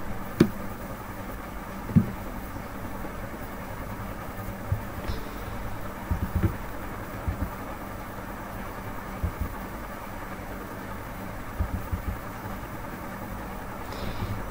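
Steady low background hum, with a sharp click about half a second in and another at about two seconds, and a few faint low knocks later on.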